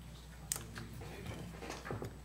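A sharp click about half a second in, then a few faint knocks and rustles as people move about and handle papers in a meeting room, over a steady low hum.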